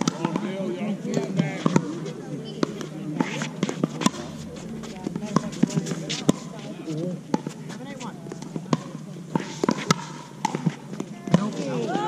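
Pickleball paddles striking a hard plastic ball in a rally: about a dozen sharp pops at uneven intervals, roughly one every second, over people talking.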